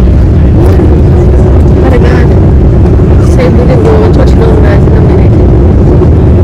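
Loud, steady low roar inside a jet airliner's cabin as it rolls down the runway just after landing, with engine noise and runway rumble filling the cabin.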